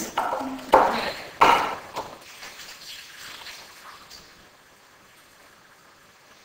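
A short laugh from a woman with a few sharp knocks and scrapes of a wooden pestle working basil and garlic in a wooden mortar, all in the first two seconds. Then only faint room noise.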